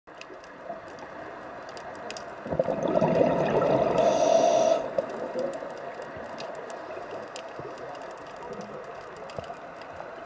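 Scuba diver's exhaled breath bubbling out of a regulator underwater, one rushing exhale lasting about two seconds, starting a couple of seconds in. Under it is a steady underwater hiss with faint scattered clicks.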